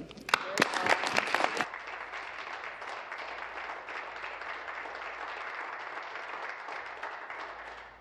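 Applause from members of a legislature, uneven and louder for the first second or so, then steady clapping that tapers off near the end.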